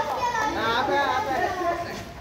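Several children's voices talking and calling out over each other.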